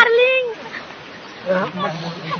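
People's voices: a short spoken sound that trails off in the first half second, then after a quieter moment another voice holding one steady low note near the end.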